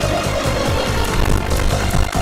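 Online slot game's background music playing loudly and continuously while the reels spin in free spins, with a held tone over a repeating low pulse.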